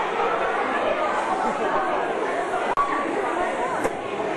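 Audience chattering in a large hall: many overlapping voices talking at once, with no music playing.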